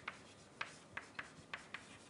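Writing during a lecture: faint, irregular short ticks and scratches of a pen or chalk being set down and dragged, about six strokes.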